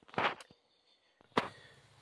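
Mostly quiet, with a brief soft noise near the start and one sharp click about a second and a half in, followed by a faint low steady hum.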